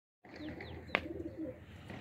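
Pigeons cooing in low, wavering tones, with two short falling chirps near the start and a single sharp click about a second in.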